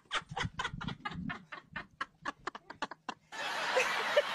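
A woman laughing hard in rapid, even bursts of about five a second that trail off. About three seconds in, the sound cuts to another recording with steady background noise, and a new run of laughter starts.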